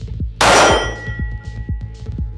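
A single loud metallic clang about half a second in, its clear ringing tones dying away over more than a second.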